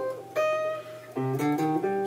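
Archtop electric jazz guitar playing a single-note arpeggio line, the C minor add9 shape moved up the neck: one held note from about a third of a second in, then a quick run of notes from just past one second.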